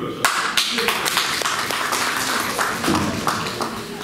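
A small audience clapping hands, a dense run of claps that starts sharply about a quarter second in and dies down just before the end.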